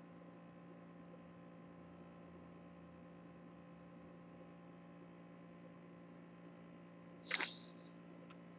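Near silence: room tone with a faint steady hum. Near the end comes one short noisy sound, about half a second long.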